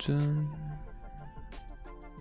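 Quiet background music with long held notes. A man's voice makes a short hum at the very start, and a few faint clicks come later.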